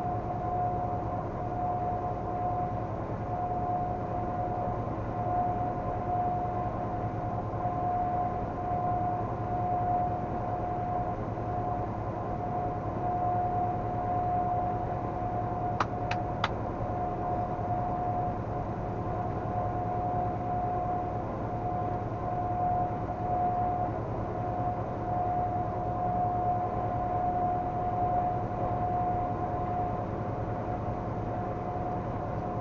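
Steady road and engine noise inside a moving vehicle at highway speed, with a constant high hum running through it. A few sharp clicks come about halfway through.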